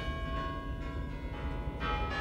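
Bells ringing, several notes struck one after another and ringing on, over a low rumble.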